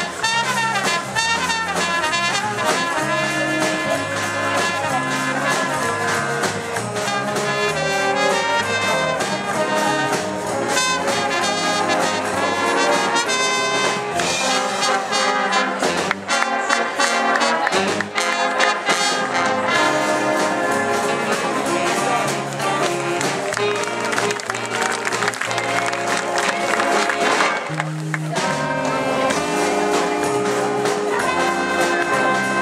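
School stage band playing a jazz-style piece led by trumpets, trombones and saxophones over a drum kit.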